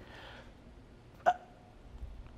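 A man's single short grunt of effort about a second in, with faint breathing around it, as he strains through a hard rep of a resistance-band press.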